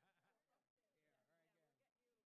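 Near silence, with only a trace of a very faint voice.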